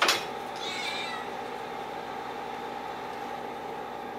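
A couple of sharp noises right at the start, then a domestic tabby cat gives one short meow about half a second in, over a steady background hum.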